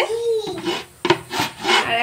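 A pan lid scraping and knocking against the rim of a cooking pan as it is moved, with a sharp clack about a second in.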